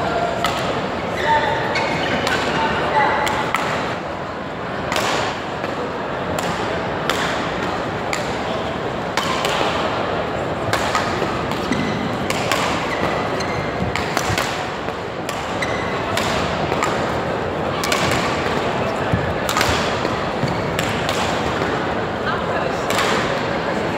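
Badminton rackets striking a shuttlecock in a rally, sharp clicks about once a second, with court shoes squeaking on the floor, especially in the first few seconds. Chatter from people in the hall runs underneath.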